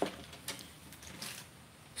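Quiet room noise with a few faint light ticks as a fishing rod is handled.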